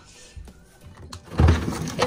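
A refrigerator drawer being pulled open: a short, loud sliding noise starting about a second and a half in.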